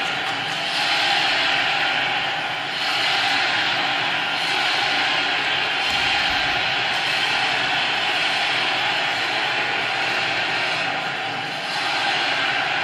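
A crowd of schoolchildren shouting and cheering, a dense, continuous din.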